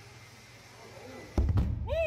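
A gorilla slamming against the thick glass of a zoo viewing window: a sudden heavy thud about one and a half seconds in, followed at once by a person's startled cry.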